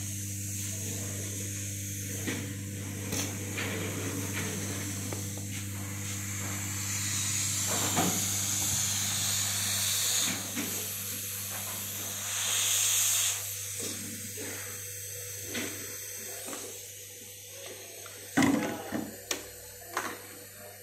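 Hot air rework gun blowing on a motherboard to desolder a small 8-pin IC: a steady hiss of air over a low fan hum, louder for a stretch about halfway through. A few sharp knocks near the end.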